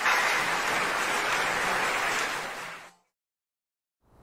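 A steady burst of hiss-like noise on the intro's soundtrack, a transition sound effect under the animated name card, fading out about three seconds in and then cutting to dead silence.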